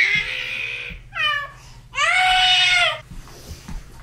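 Young infant crying in wails: one cry trailing off in the first second, a short rising-and-falling cry, then a long loud wail about two to three seconds in.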